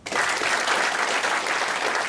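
Audience applauding, starting suddenly and holding steady.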